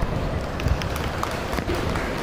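Steady background noise of a large indoor sports arena, with a dull thump right at the start and another about three quarters of a second in, and a few light clicks after the first second.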